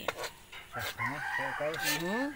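A rooster crowing in the background: one long call starting about a second in.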